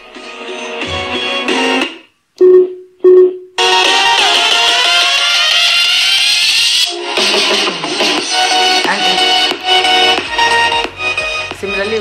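A song playing through a small waterproof Bluetooth shower speaker while its volume-up button is held. About two seconds in the music drops out for two short, loud beeps, then comes back noticeably louder.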